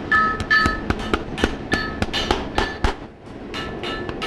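A farrier's driving hammer nailing a horseshoe onto a hoof: a rapid series of light taps, about four to five a second, with a metallic ring, and a short lull about three seconds in.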